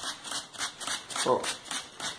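Hand trigger spray bottle squirting water mist onto anthurium leaves to rinse off dust, in quick repeated hissing squirts, several a second. A short vocal sound comes about halfway through.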